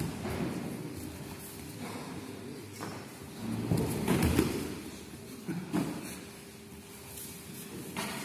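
Grapplers scuffling on judo mats in a large hall, with a few dull thuds and knocks of bodies against the mats; the loudest stretch is a low swell about four seconds in.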